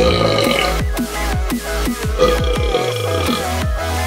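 A man burping twice over electronic dance music with a heavy bass beat. The first burp carries into the first half second, and the second starts about two seconds in and lasts about a second.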